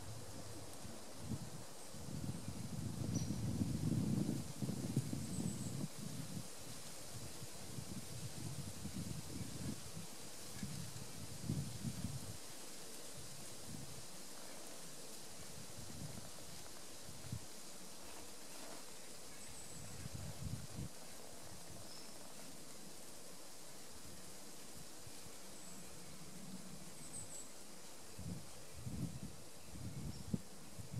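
Quiet woodland ambience: irregular gusts of wind buffeting the microphone, loudest a few seconds in, with a few faint, short, high bird chirps now and then.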